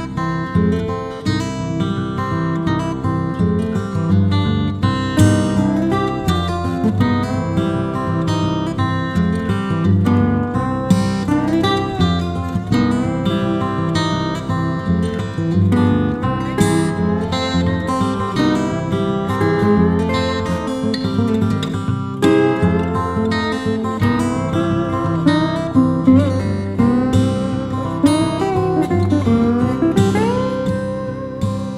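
Background music: acoustic guitar played with plucked and strummed notes, continuing steadily.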